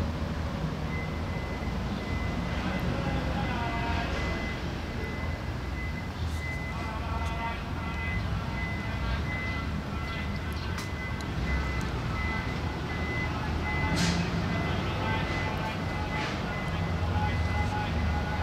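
A vehicle engine running steadily, with a high electronic beep that starts about a second in and keeps repeating.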